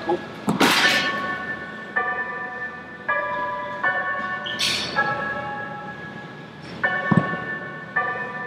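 Background music of held synth chords that change about once a second. Two short hissing bursts come about half a second and four and a half seconds in, and a low thud comes near the end.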